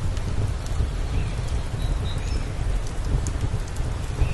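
Steady, gusting wind noise on the microphone beside an outdoor wood fire, with a few faint clicks.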